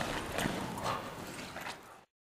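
Belgian Malinois tussling on a bite sleeve with its handler, with thuds and scuffs of paws and feet on sand. A few sharp knocks come roughly half a second apart, and the sound fades and then cuts off at the end.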